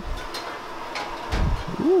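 Restaurant room ambience: a faint steady hum with a few light ticks and clatter and a soft low thud about halfway through, then a man says "ooh" at the very end.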